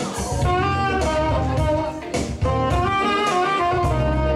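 Live smooth jazz: a saxophone plays a flowing melody line over keyboard accompaniment and a heavy bass line.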